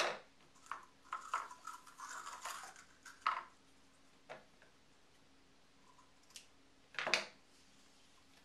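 Satin ribbon and its plastic spools being handled on a tabletop: scattered light clicks and taps, a busy stretch of rustling in the first few seconds, and a louder rustle about seven seconds in as ribbon is pulled out.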